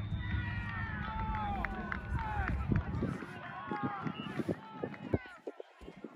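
Overlapping distant shouts and calls of players and sideline spectators at an outdoor soccer game. A low rumble on the microphone runs through the first three seconds, and a few short knocks come near the end.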